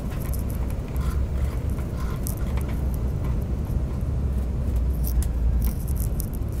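Airliner cabin noise as the jet rolls on the ground after landing: a steady low rumble of engines and wheels, with faint scattered rattles of cabin fittings.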